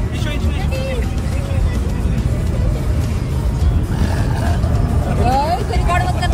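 Steady low rumble of road and engine noise inside a moving car's cabin at highway speed, with faint voices and music over it.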